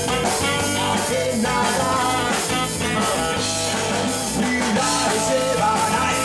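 Ska-reggae band playing live: electric guitar, bass guitar, drums and saxophone, loud and steady, with a wavering melody line over the band.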